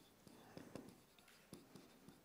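Marker pen writing on a whiteboard: faint, short strokes of the felt tip as a word is written letter by letter.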